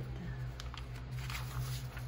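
Sheets of paper being handled and slid across one another by hand, giving a few light rustles over a steady low hum.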